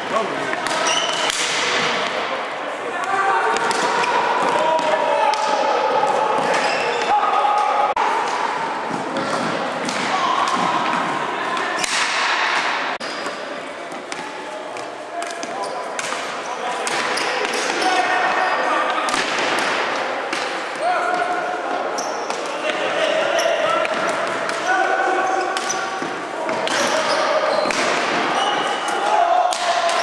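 Ball hockey play in a gym: repeated sharp knocks of sticks and ball on the hardwood floor, with indistinct shouting from players, all echoing in the large hall.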